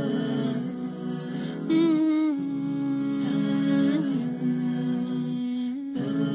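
Wordless hummed vocal music: long held notes that slide gently from one pitch to the next, with no beat.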